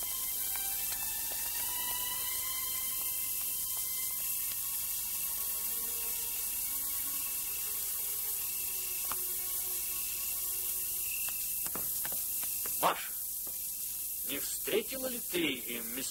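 Steady hiss of an old 1930s film soundtrack, with faint sustained notes of an orchestral film score beneath it. There is a sharp knock about thirteen seconds in, and several more knocks and short sounds near the end.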